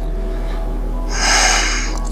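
A person's audible breath: one long, noisy breath lasting about a second in the middle, drawn in time with a slow pelvic-tilt movement in yoga.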